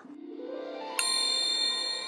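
A soft swelling musical tone, then about a second in a bright chime strikes once and rings on: a closing sound-effect sting.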